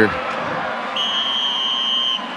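A referee's whistle blown once: a single steady high-pitched tone of a little over a second, starting about a second in, over a steady background of stadium noise.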